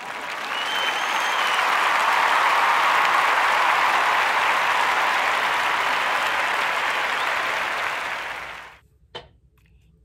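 Crowd applause that swells in at the start and fades out shortly before the end, with a short high whistle about a second in.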